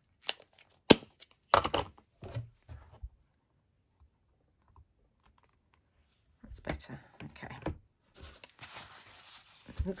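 Handling noises from clear acrylic stamping: a few sharp clicks and taps as the stamp is re-inked and pressed onto the card. After a quiet stretch, a tissue rustles and crinkles as it wipes the black ink off the stamp.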